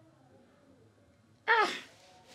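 Near silence in a small room, then a man's short 'ah' with a falling pitch about one and a half seconds in.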